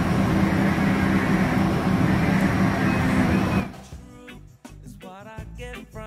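A steady, loud engine noise with a low hum, cut off suddenly about three and a half seconds in; music with singing follows.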